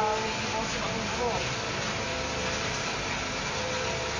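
A few short words of low, indistinct talk near the start and again about a second in, over a steady background hiss and hum.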